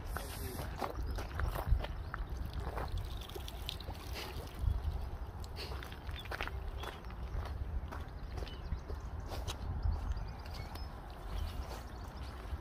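Wind rumbling on the microphone, with scattered knocks and rustles of handling and movement on the bank, and a faint slosh of water.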